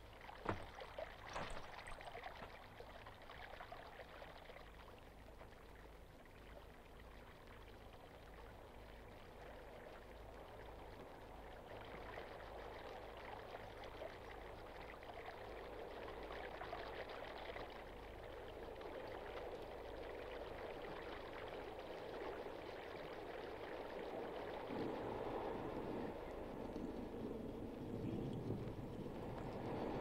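Running water, a steady rush that slowly grows louder, with a couple of sharp knocks or splashes in the first two seconds.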